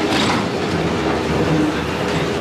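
A train running past, a loud steady noise with a few held tones in it.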